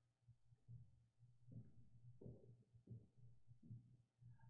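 Near silence over a low steady hum, with about five faint, soft footsteps evenly spaced under a second apart.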